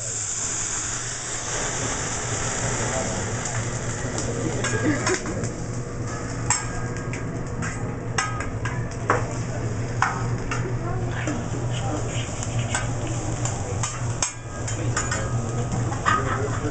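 Food sizzling on a hot hibachi steel griddle, with a strong burst of hiss in the first second as liquid from a squeeze bottle hits the plate. Sharp clicks and clanks of metal utensils striking the griddle are scattered throughout.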